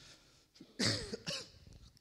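A person coughing, clearing the throat in two short bursts about a second in.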